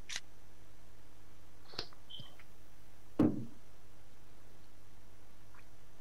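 Steady hum on a handheld microphone's sound feed, with a few faint clicks and one louder low thump about three seconds in.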